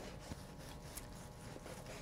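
Faint sound of a long, sharp knife slicing across the grain of a cooked flank steak on a cutting board.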